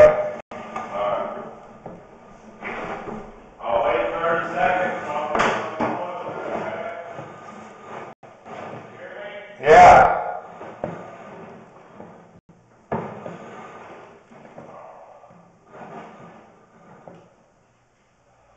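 Indistinct, muffled voices that the transcript does not catch, with one loud burst about ten seconds in, fading toward quiet near the end.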